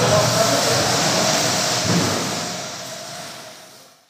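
Indistinct voices and general room noise of a group working in a large, echoing hall, fading out near the end.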